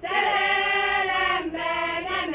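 A small choir, mostly women's voices, singing unaccompanied. The phrase comes in together right at the start, a chord is held for about a second and a half, then the voices move on to the next note.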